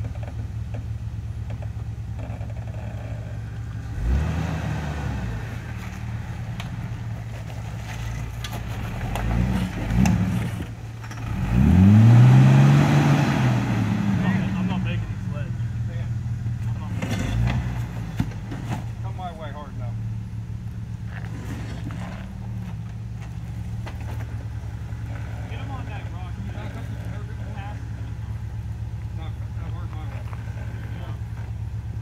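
Jeep engine idling as the Jeep crawls over boulders. It is revved in short bursts about 4 and 10 seconds in, then held in one longer, louder rev whose pitch climbs and falls around the middle, with another brief rev a few seconds later.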